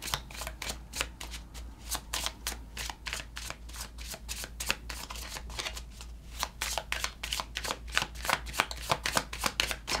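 A deck of tarot cards being shuffled by hand, overhand: a steady run of quick, soft card clicks and slides, several a second.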